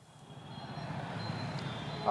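Steady outdoor street and traffic noise fading up over about a second as a live outdoor microphone line opens.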